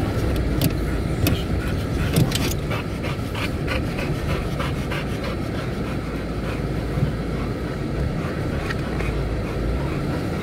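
Car running at low speed over brick paving, heard from inside the cabin: a steady low rumble of engine and tyres. A run of short, quick clicks comes about two seconds in and lasts a few seconds.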